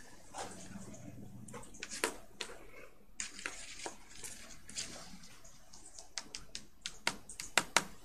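Scattered light clicks and taps over faint room noise, with a few sharper clicks close together near the end.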